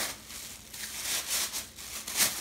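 The wrapping around a new skillet crinkling and rustling as it is handled, in several short irregular rustles.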